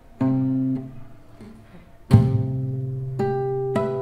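Acoustic guitar played fingerstyle. A low note sounds first. About two seconds in, a bass note is struck together with a sharp percussive palm hit on the strings, and then higher notes ring out over it.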